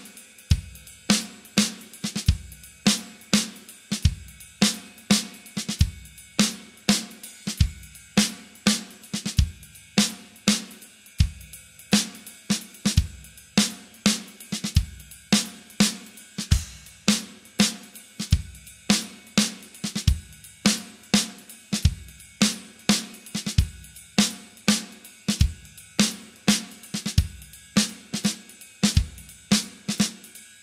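Acoustic drum kit played on its own with no backing music: a swung jazz groove in 5/4 on ride cymbal and hi-hat, with snare and bass drum hits.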